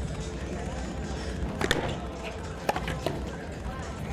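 A ball struck with a racquet and slapping off the front wall during a serve and return: a sharp crack about two seconds in, then two more a little over a second later.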